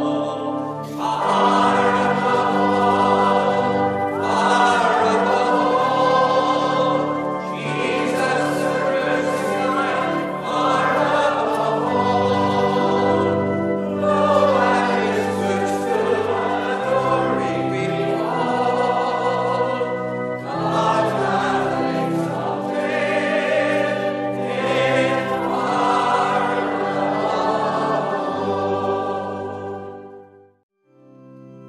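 A choir singing a hymn over held organ chords.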